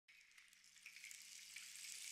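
Near silence: a faint hiss that slowly grows louder.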